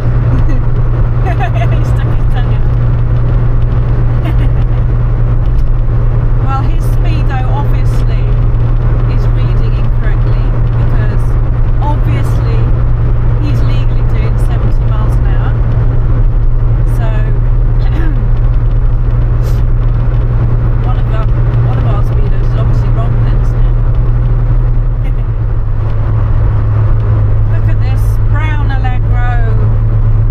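Austin Allegro 1500 estate cruising at motorway speed: a steady, loud low engine and road drone, its pitch shifting slightly about 25 seconds in.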